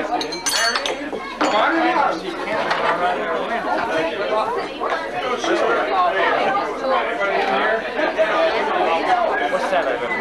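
Many people talking at once in indistinct, overlapping chatter. A few sharp clinks of dishes and serving utensils come about half a second in.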